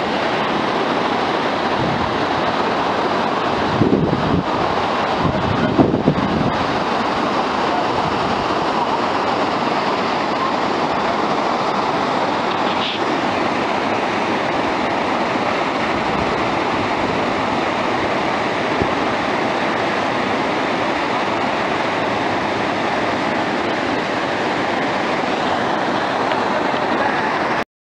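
Aber Falls waterfall and the cascades below it, heard close up as a loud, steady rush of falling water. Two brief low rumbles come about four and six seconds in.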